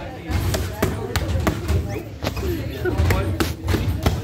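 Boxing gloves hitting focus mitts in quick combinations: a string of sharp smacks, about a dozen, some landing in quick pairs.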